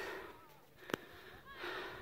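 Faint heavy breathing of a hiker winded from a steep climb, with one breath at the start and another near the end. A single sharp click comes about a second in.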